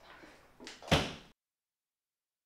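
A door slamming shut about a second in, just after a softer knock; then the sound cuts off to dead silence.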